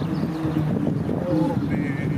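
Wind buffeting the microphone in a low rumble, with indistinct voices of people talking.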